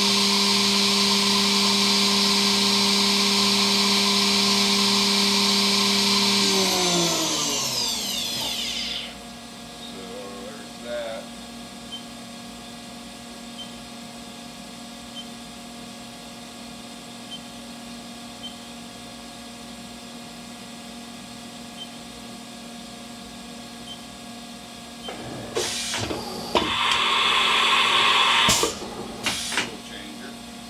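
Haas VF-2SS machining-center spindle (30 HP, 40-taper) running at 12,000 RPM with a steady high whine, then winding down, its pitch falling until it stops about eight or nine seconds in. Near the end, a burst of hissing noise about three seconds long, with sharp clicks at its start and end.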